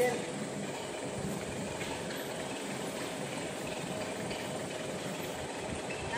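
Forklift engine idling steadily while the truck holds a load on its raised forks.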